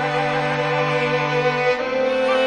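Iranian film-score music on bowed strings: a violin melody with vibrato over a long held low cello note, which stops shortly before the end.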